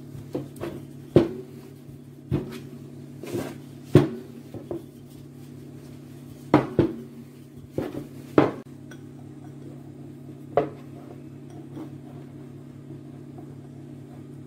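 Dough being rolled out and handled on a hard worktop, with about a dozen irregular sharp knocks and taps, mostly in the first nine seconds, over a steady low hum.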